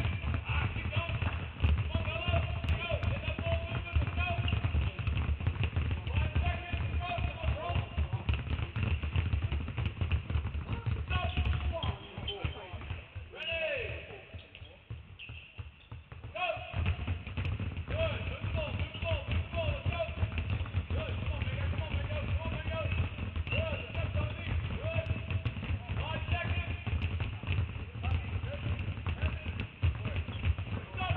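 Many basketballs dribbled at once on a hardwood court: a dense, continuous patter of bounces that drops away for a few seconds about halfway through.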